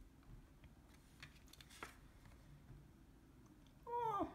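Near silence, with a few faint rustles and clicks of tarot cards being handled and swapped about a second in. A falling pitched sound starts at the very end.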